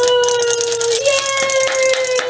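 A woman sings out one long held note that steps up in pitch about a second in, over the rapid clicking rattle of a wind-up toy running after it has been let go.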